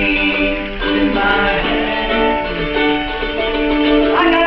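A ukulele strummed along with a sung melody of held notes, a live acoustic song.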